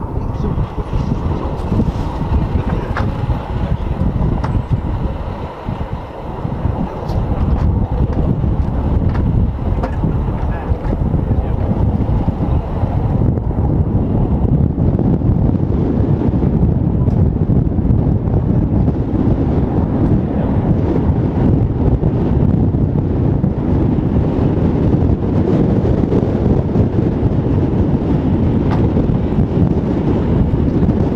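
Wind buffeting the microphone outdoors: a loud, dense rumble with no clear pitch, which grows heavier after about eight seconds.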